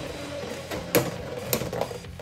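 Two Beyblade X spinning tops running in a clear plastic stadium, a steady spinning whir with two sharp clacks, about a second in and again half a second later.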